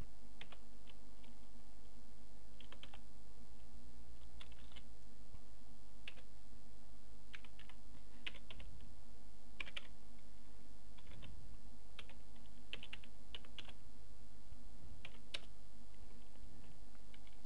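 Typing on a computer keyboard: irregular keystrokes in short clusters with pauses between them, over a steady low electrical hum.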